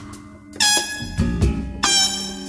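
Live jazz-fusion band with a trumpet playing two bright, held notes over sustained low bass and keyboard tones: the first starts about half a second in, the second near the end.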